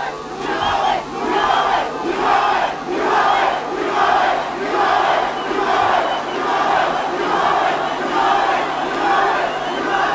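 A large outdoor crowd chanting in unison, one short call repeated evenly about one and a half times a second. A steady low hum runs underneath.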